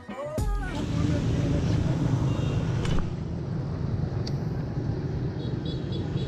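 Steady outdoor road and traffic noise, heavy in the low range, recorded from a bicycle being ridden along a street, after a brief beat of background music at the very start.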